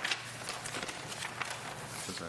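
Paper pages of a meeting packet being turned and handled: a run of short, irregular rustles and taps.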